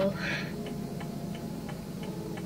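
Car indicator relay ticking evenly, about three clicks a second, over the car's low steady hum inside the cabin.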